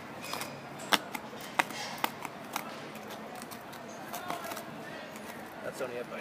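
White plastic scoop digging and scraping in stony soil, with a handful of sharp clicks in the first half as it strikes grit and stones.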